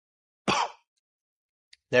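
A man's short, breathy exhale with a little voice in it, about half a second in, as he lets out cigar smoke after a drawing puff. A faint lip click follows just before he starts speaking.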